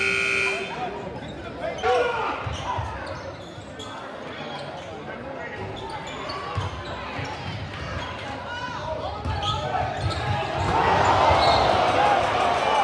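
Basketball dribbling on a hardwood gym floor under steady crowd chatter in a large echoing gym. A scoreboard horn stops about half a second in, and the crowd noise swells near the end.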